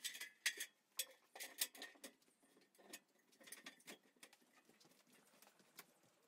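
Faint, irregular taps and knocks of someone climbing an aluminium extension ladder, feet and hands on the rungs, the knocks thinning out in the last few seconds.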